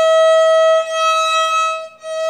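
Solo violin bowed, holding one high note at a steady pitch, with a slight dip in loudness about a second in where the bow changes.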